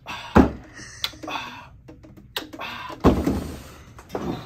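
Two heavy thuds, about half a second in and again about three seconds in, as a Juki sewing machine is set down hard on a work table, with smaller knocks and clatter between them.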